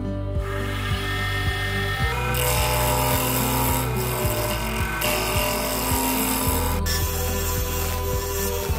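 Background music over a wood lathe spinning a wooden handle blank, with a turning chisel cutting into the wood. The cutting hiss comes in about half a second in and grows louder after about two seconds.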